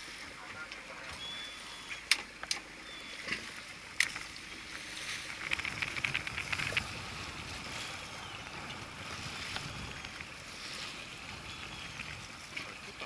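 Sea water lapping and sloshing against a small boat's hull, with wind. Sharp clicks come about two seconds in and again about four seconds in, and a quick run of light ticks follows around six seconds in.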